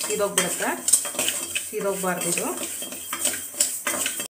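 Metal spoon stirring rice in a steel pot, scraping the bottom in repeated strokes with squeaky metal-on-metal scrapes and clinks.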